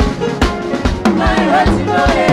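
Live band music driven by a drum kit: a steady beat of kick and snare strokes under bass and melodic instrument lines.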